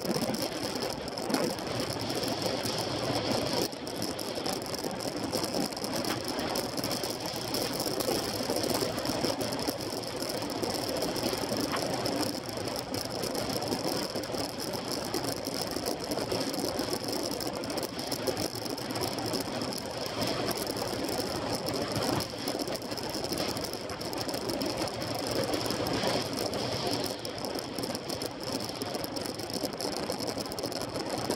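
Road bike riding at speed on smooth tarmac, its drivetrain and tyres heard as a steady mechanical noise through a handlebar-mounted camera.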